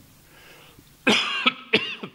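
A man coughing into his hand near a microphone: a longer cough about a second in, then a second short cough.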